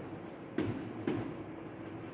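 Chalk writing digits on a blackboard: two sharp chalk strokes about half a second apart, over a steady background hum.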